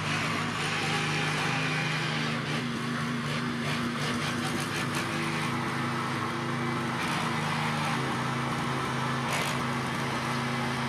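Small engine of a walk-behind tiller running steadily under load as its tines churn through soil, with bursts of rattling clatter about two to five seconds in and again near the end.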